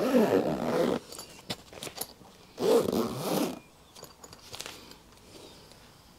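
Zip on a tuning-fork carrying case being pulled closed in two long strokes, one at the start and one about two and a half seconds in, followed by a few light clicks.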